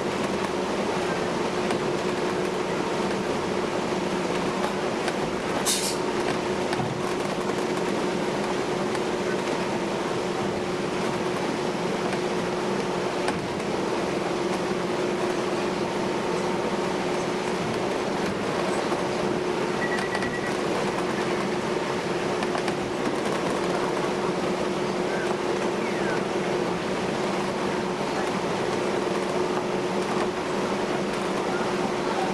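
Steady drone of a passenger ferry under way, heard inside its cabin, with a constant low hum and a brief high-pitched sound about six seconds in.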